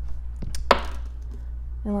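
An astrology die thrown onto a table of cards: a small knock, then a sharp clack about three-quarters of a second in as it lands.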